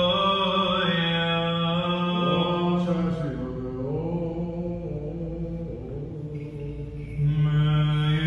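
Byzantine chant in a male voice: slow, melismatic singing with long held notes that slide between pitches, a little softer mid-way and fuller again near the end.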